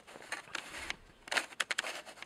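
Handling noise as the paperback and camera are moved: a few soft rustles, then a quick run of small sharp clicks and ticks about one and a half seconds in.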